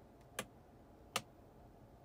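Two sharp clicks about three-quarters of a second apart, the second louder, over faint room tone.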